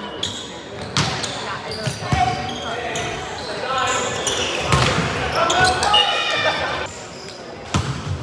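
A volleyball being struck several times during a rally, the sharp hits echoing through a large gym, with players' voices calling out between them.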